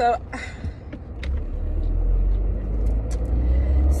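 Low car rumble heard from inside the cabin, swelling about a second in and then holding steady, with a few faint clicks.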